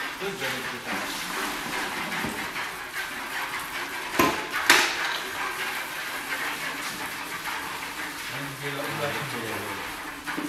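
Milk being handled and poured between galvanised steel buckets, with two sharp metallic knocks of bucket against bucket or handle about four seconds in. Men's voices murmur faintly in the background.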